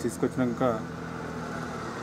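A man speaking Telugu in short phrases, then about a second of steady background noise without words.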